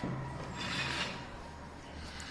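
Soft rubbing and rustling of hands moving over a dog's coat, with a low steady hum through the first second or so.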